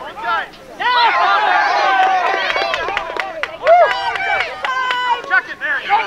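Many voices of spectators and players shouting over each other at once. The noise dips briefly just after the start, then rises again, with scattered sharp clacks through the middle.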